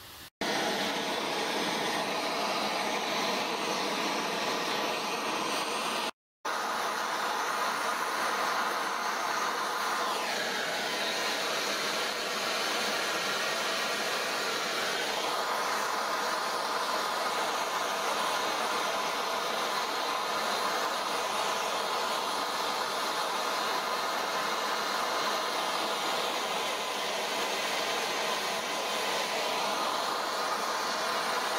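Handheld gas blowtorch burning with a steady hiss, heating small steel parts for oil blackening. The sound cuts out briefly about six seconds in.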